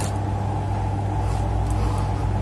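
Steady low hum with a faint hiss over it.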